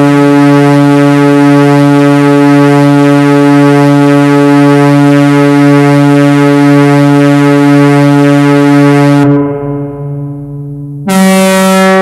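EMS Synthi AKS analogue synthesizer sounding a loud, steady held note with many overtones. About nine seconds in, the tone turns duller and quieter. Near the end, a higher note cuts in abruptly.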